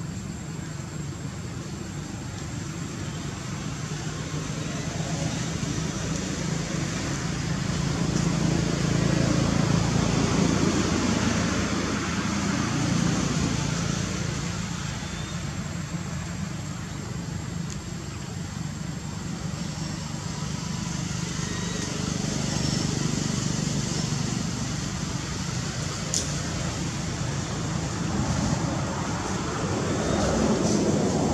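Steady low rumble and hiss of outdoor background noise, growing louder for a few seconds about a third of the way in, with a single sharp click near the end.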